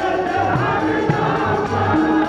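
Sikh kirtan: voices singing a devotional hymn to a harmonium's sustained reed chords, with tabla accompaniment whose deep bass drum strokes bend in pitch.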